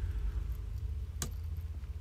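A steady low hum, with one sharp click a little past halfway.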